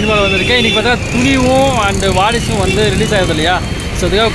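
A man talking over the steady noise of busy street traffic.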